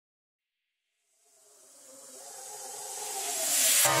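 Silence, then a synthetic rising noise sweep (a riser) that swells steadily louder for about three seconds, building into the hit of an electronic music track near the end.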